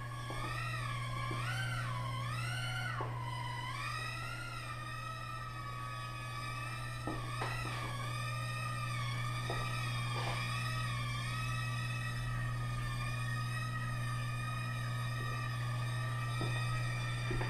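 Small quadcopter's electric motors and propellers whining in flight, the pitch swinging up and down with throttle changes for the first few seconds and then holding steady, over a constant low hum.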